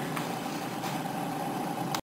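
Steady background hiss of a voice recording between sentences, with a faint steady hum. It cuts off abruptly to dead silence at the end as the slide's narration clip ends.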